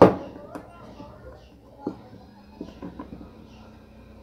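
A few light clicks and knocks as a perforated nozzle plate is set by hand onto a glued rim and pressed into place.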